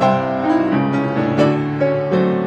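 Freshly tuned grand piano being played: a flowing passage of chords under a melody, with new notes struck several times a second and earlier ones ringing on beneath them.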